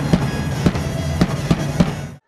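A fan beating a large bass drum in the stands of a sports hall, single strikes roughly every half second, over a steady din from the crowd.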